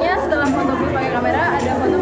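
Speech: a woman talking, with chatter from other people in the room.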